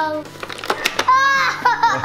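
A toddler's excited, wordless exclamation: a high, arching "ooh" about a second in, after a falling call at the very start. A few short clicks come just before the "ooh".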